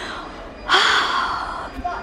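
A woman's excited gasp: a sudden breathy intake of breath lasting about a second, starting a little way in.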